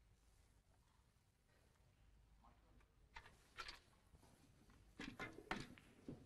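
Hushed room tone broken by a few sharp clicks of snooker balls knocking together: two about three seconds in, then a quick cluster of louder ones near the end.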